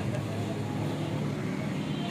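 A steady low rumble of vehicle noise.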